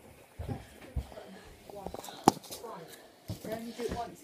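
Quiet mumbled children's voices with dull knocks from a hand-held camera being handled. A single sharp click a little over two seconds in is the loudest sound.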